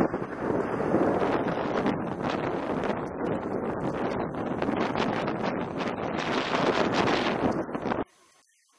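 Wind buffeting the microphone of a moving camera: a steady rushing noise with irregular gusts and crackles.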